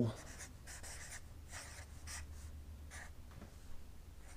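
A felt-tip marker writing on a large paper pad, a series of short, faint scratchy strokes as letters are drawn. A low steady hum runs underneath.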